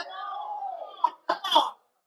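A person's drawn-out vocal sound lasting about a second, followed by three short coughs.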